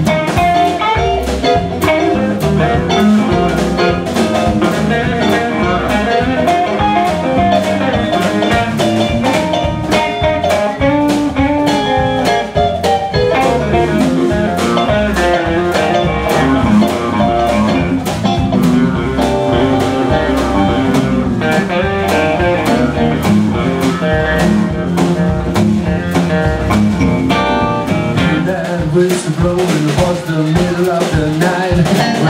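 Live blues band playing an instrumental passage: electric guitars over bass and drums, with no singing.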